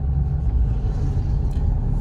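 Steady low rumble inside the cabin of a moving Maruti Swift DDiS diesel: engine and road noise while cruising, the engine a little noisy.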